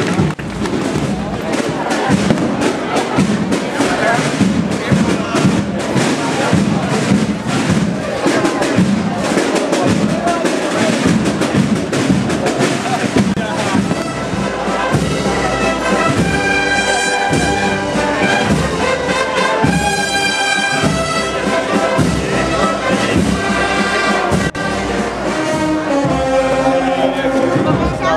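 A brass processional band playing a march, holding sustained brass chords that come through clearly from about halfway on. In the first half a dense clatter of sharp hits and crowd voices covers the band.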